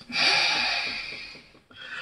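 A man's long exhale, a sigh blown across a close headset microphone, loudest at the start and fading away over about a second and a half. It is followed by a softer breath near the end.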